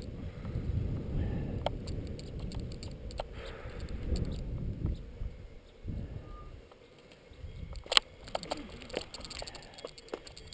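Wind rumbling on the action camera's microphone while riding a bicycle up a mountain road, fading as the bike slows to a stop about six to seven seconds in. Then a series of clicks and a sharp knock about eight seconds in.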